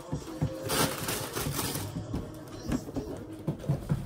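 Tissue paper rustling and crinkling as it is handled, with light knocks from handling shoes and boxes.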